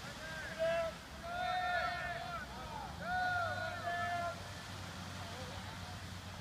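Shouts and calls from a group of people across the field, several voices overlapping in drawn-out, rising-and-falling yells for the first four seconds, over a low steady rumble.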